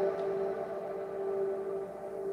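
A single sustained musical note, steady in pitch with faint overtones, slowly fading.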